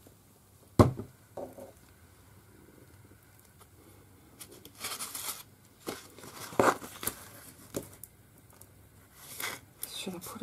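A sharp knock on the desk about a second in, then intermittent rustling, crinkling and scraping of card stock and a plastic packet being handled and slid across a cutting mat.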